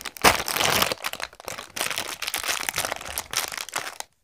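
Thin plastic wrapper crinkling as it is pulled and worked open by hand, in irregular bursts, loudest about a quarter of a second in.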